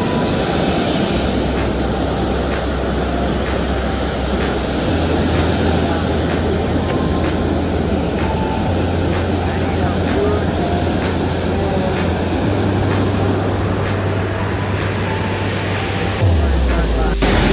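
Steady rush of surf and wind, with a slow bass line under it that changes note every few seconds and faint ticks about twice a second, like background music.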